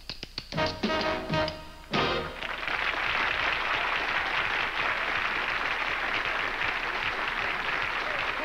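Tap shoes striking the stage in quick clicks over the big band's closing brass chords, which stop about two seconds in; then a studio audience applauding steadily.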